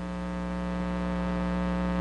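Steady electrical mains hum in the recording, a low buzz with a stack of even overtones, growing slightly louder.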